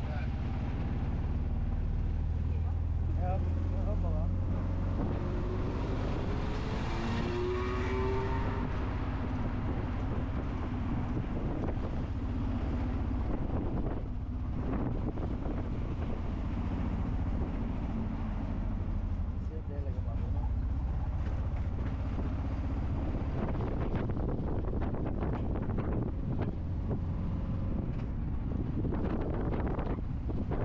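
A tuk tuk's small engine running steadily as it drives along city streets, with wind buffeting the microphone in the open cab.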